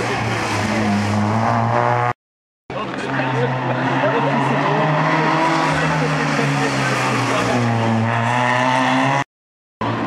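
Rally cars, small Peugeot 106 hatchbacks, taking a tight corner one after another at racing pace. Each engine note falls as the car slows for the bend, then rises again as it accelerates away. The sound cuts out completely for about half a second twice.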